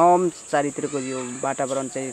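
A woman's voice over a steady, high-pitched chirring of insects.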